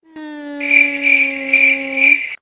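Edited-in comedic "loading" sound effect: a steady electronic hum, joined about half a second in by a higher buzz that pulses about twice a second. It plays as a gag for a mind going blank mid-sentence.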